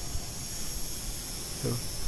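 SG900-S GPS quadcopter flying high overhead, its motors giving a faint steady high whine, with a low wind rumble on the microphone underneath.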